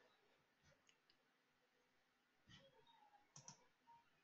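Near silence, with a few faint computer mouse clicks in the second half.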